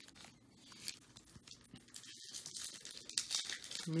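Foil wrapper of a trading-card pack crinkling and tearing as it is handled and opened, in faint scattered rustles that grow louder toward the end.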